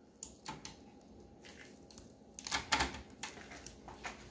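Knife cutting beeswax comb loose along the inside of a wooden hive frame, making a string of small, irregular clicks and ticks. There is a louder cluster of clicks about two and a half seconds in.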